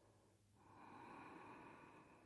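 One faint, long breath drawn audibly through a narrowed throat: ujjayi breathing, starting about half a second in and lasting to near the end.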